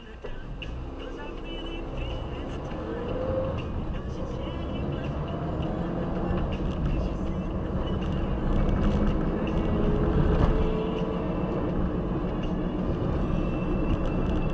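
Car engine and road noise heard from inside the cabin, growing steadily louder as the car gathers speed, with the engine note rising in pitch.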